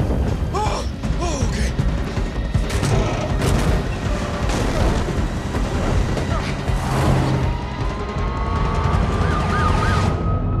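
Dense action-film sound mix over music: fire and a run of sharp crashes and impacts from the burning van. Near the end a police siren rises in and wails.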